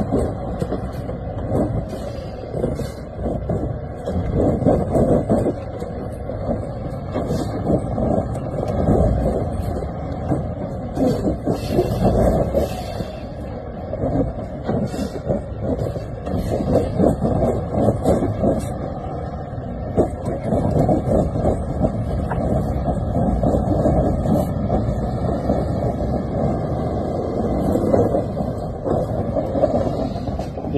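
Diesel engines of a heavy wrecker tow truck and a snowbound semi-truck running with a steady low rumble as the wrecker pulls the semi out of deep snow.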